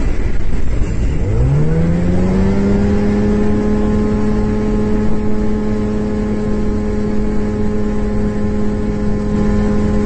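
Inside a light aircraft's cockpit, a steady rumble of propeller engine and wind. About a second in, a pitched drone rises over about a second and then holds one steady pitch.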